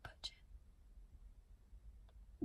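Near silence: a faint steady low rumble, with a brief faint whisper right at the start.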